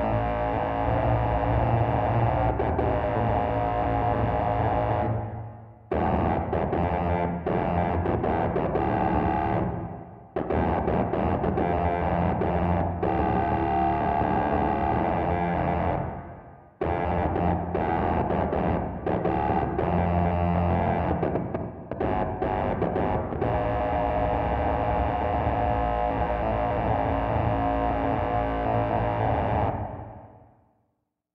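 Electric bass (Ibanez Mikro) played through a Korg Miku Stomp on its 'pahh' voice into a Magpie Pedals Fruits oscillator pedal and an Empress modulation pedal: a dense, distorted synthetic tone with added oscillator voices, its phrases dying away and restarting three times. From a little past halfway the Fruits' LFO is on at a high rate, moving the oscillators' pitch.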